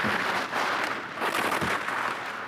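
Ski edges scraping over hard-packed snow as a giant slalom racer carves through turns: a crackling hiss that swells and fades with each turn.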